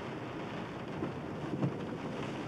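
Freezing rain falling, a steady hiss heard from inside a car, with faint knocks about a second in and again about half a second later.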